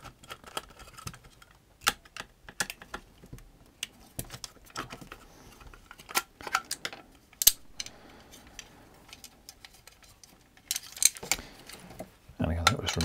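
Irregular clicks and knocks of a plastic time-switch casing and its clock assembly being handled and taken apart by hand. The loudest clack comes about seven and a half seconds in, and a quick cluster of clicks comes near the end.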